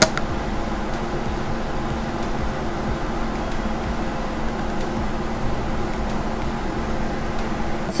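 Steady background hiss and low hum of room noise, with a short click at the very start.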